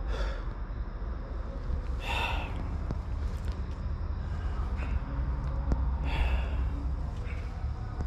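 A person breathing out audibly three times, a couple of seconds apart, over a steady low rumble, with a few faint clicks.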